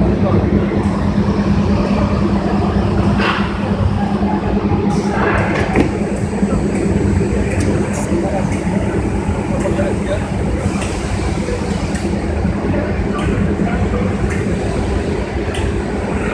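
Steady machinery noise from a running automatic conveyor weighing line, a continuous hum with a few short sharp clicks scattered through it.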